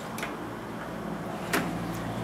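Two light clicks from a pedal-box accelerator pedal being worked by hand, with the sharper one about a second and a half in. A steady low hum runs underneath.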